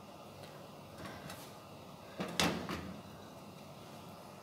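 A frying pan shifted on the gas stove's grate about two seconds in, a short scraping clatter of metal, with a couple of lighter knocks about a second in, over a faint steady hiss.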